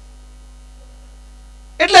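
Steady electrical mains hum from the microphone and amplifier chain during a pause, with a man's voice coming in loudly near the end.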